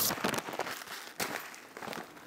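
Light kitchen handling noises: a few soft clicks and knocks over a faint steady hiss.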